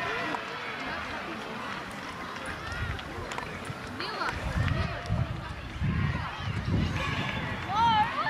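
Scattered shouts and calls from spectators and players at a rugby league game, heard at a distance, none clear enough to make out. From about halfway, low rumbling bursts sit underneath the voices.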